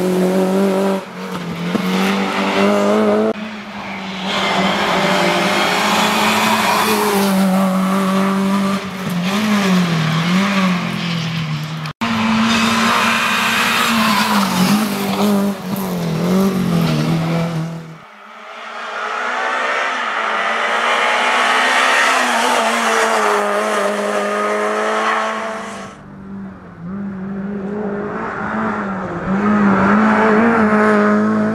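Renault Clio RS N3 rally car's four-cylinder engine driven hard, its revs rising and falling with gear changes and lifts through bends. There are several passes cut together, with the sound changing abruptly about twelve, eighteen and twenty-six seconds in.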